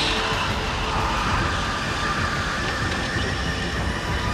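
Loud, steady road-traffic noise, the rushing rumble of vehicles passing close by on a multi-lane road.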